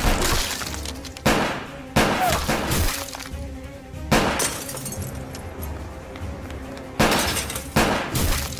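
Film sound effects of a handgun firing about six loud shots at uneven intervals, with glass and objects shattering after the hits, over background music.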